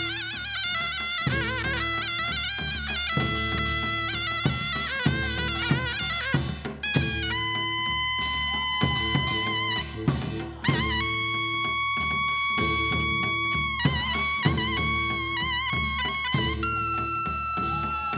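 Taepyeongso (hojeok), the Korean conical shawm, playing a bright, heavily ornamented Gyeonggi-style melody with wavering notes and long held high notes in the middle. Beneath it, a samul percussion ensemble of janggu, buk, kkwaenggwari and jing keeps a steady beat.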